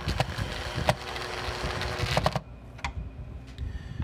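Small cordless drill/driver running, driving a screw to fasten the piece that holds the fence charger's circuit board down. It stops about two and a half seconds in, and a few light clicks follow.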